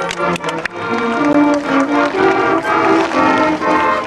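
Junior high school marching band playing a march: a few sharp drum hits at the start, then the brass come in about a second in and carry the tune.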